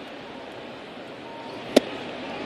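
Steady ballpark crowd noise, then one sharp crack about three-quarters of the way through as the pitched baseball meets the batter's swing or the catcher's mitt at home plate.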